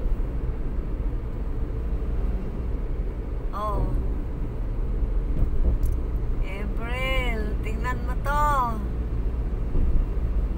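Steady low rumble of a car's engine and tyres heard from inside the cabin while driving along a highway. A voice exclaims briefly about four seconds in and twice more between seven and nine seconds.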